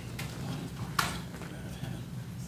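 A single sharp knock with a brief ring about a second in, after a fainter click, over a steady low hum.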